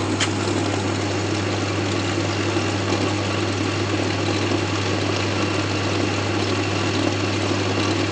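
A belt-driven charging rig running steadily: the generator turns a dynamo through a V-belt and charges a 12 V lead-acid battery, making an even, unbroken drone with a low hum and a whir. A brief click comes just after the start.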